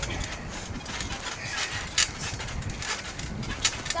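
A boy bouncing on a trampoline, heard close from the mat: a series of irregular thumps and sharp clicks from the mat and frame as he lands and pushes off.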